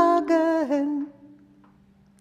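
Singing voice ending the last sung phrase of a children's song verse, with a falling note, dying away about a second in to near silence.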